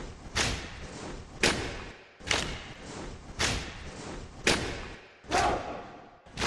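A slow, regular series of heavy percussive hits, about one a second, each struck sharply and dying away over most of a second: trailer sound-design percussion.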